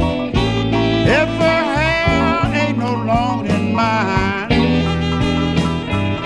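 Electric blues band recording in an instrumental passage: a lead electric guitar bending and sliding notes over a steady bass line and drums.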